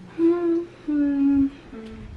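A person humming with closed lips: two held notes of about half a second each, the second a little lower than the first, then a brief short note near the end. It sounds like a thoughtful 'hmm-mm' while choosing.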